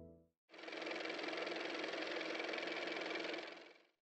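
The last of a held musical chord dies away. About half a second later a steady grainy noise starts, the sound effect of an animated logo ident; it runs for about three seconds and fades out.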